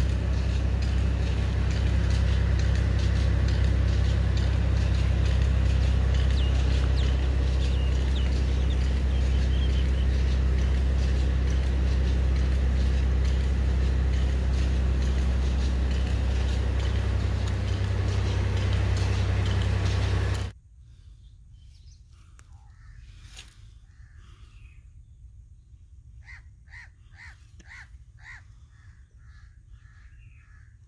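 A steady, loud low mechanical drone like an engine running, which cuts off abruptly about twenty seconds in. After that it is quiet outdoor ambience, with a bird calling a quick run of about eight repeated notes near the end.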